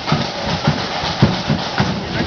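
Marching flute band's drums beating a steady march rhythm, with strong low drum strokes about three times a second.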